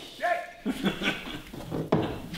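A short voiced cry about a quarter-second in, then scattered knocks and rustling as a heavy, plastic-wrapped hive lifter is handled in its wooden crate. A sharp knock comes near the end.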